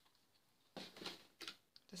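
Near silence: room tone, with a few faint short clicks about a second in.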